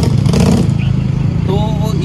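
A vehicle engine running steadily with a low hum, under speech, with a short sharp noise near the start.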